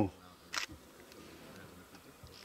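Quiet background with one brief, sharp click about half a second in.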